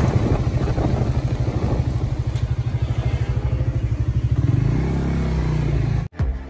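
Suzuki GSX-R150's single-cylinder four-stroke engine running under way, with the rush of a truck passing close alongside fading in the first second. About four and a half seconds in, the engine note rises as the rider opens the throttle.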